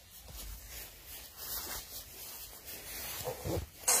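Scratchy rubbing and rustling of a nylon puffer jacket brushing right against the camera's microphone, uneven and coming in waves, with a sharp scrape just before the end.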